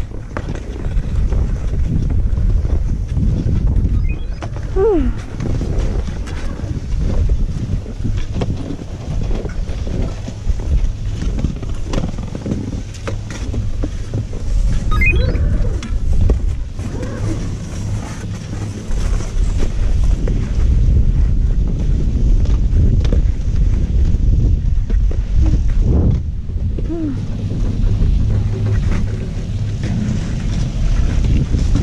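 Wind rumbling on the helmet camera's microphone, a steady low buffeting through the whole stretch.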